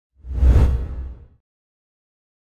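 A single whoosh sound effect with a deep low rumble under it, swelling quickly and fading out in about a second: an intro sting for a logo reveal.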